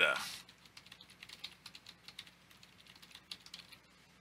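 Computer keyboard typing: a run of faint, quick, irregular key clicks.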